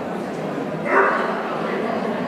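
A dog gives one short bark about a second in, over a murmur of voices in a large hall.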